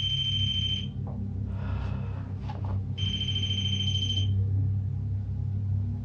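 An electronic ghost-hunting detector sounding its alarm: a steady high beep that cuts off just before a second in, then comes back for over a second from about three seconds in. A low steady drone runs underneath.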